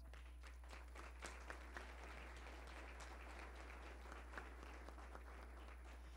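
Faint audience applause, heard at a low level over a steady low electrical hum.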